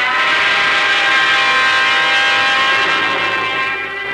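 Orchestral bridge music between scenes of a radio drama: loud sustained chords held for several seconds, shifting to a new chord near the end.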